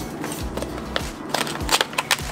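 Light clicks and scrapes from a cardboard phone-holder box being opened and its plastic tray slid out, a handful of sharp ticks spread through the second half, over soft background music.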